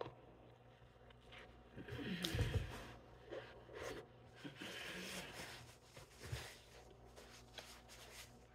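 Faint biting and chewing on a thick homemade cheeseburger, with small mouth clicks; the loudest stretch comes about two seconds in.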